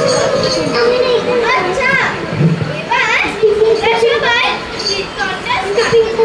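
Many children's voices chattering and calling out at once, in short high rising-and-falling cries, with a steady held note underneath in the second half.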